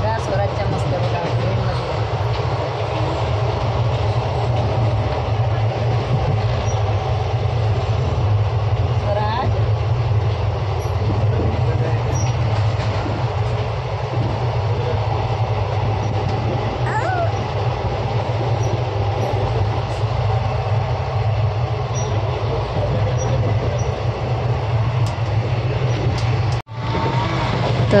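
Passenger train running, heard from inside the coach as a steady low rumble with hiss.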